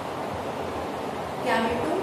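Steady hiss of background noise, with a short spoken word about one and a half seconds in.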